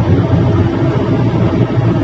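Mahindra Bolero's diesel engine and tyre noise at cruising speed, heard from inside the cabin: a steady, even drone.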